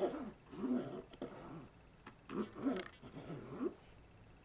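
Rubber soles of a pair of canvas Vans sneakers rubbed against each other, squeaking in short gliding up-and-down squeals, in two bouts with a pause between.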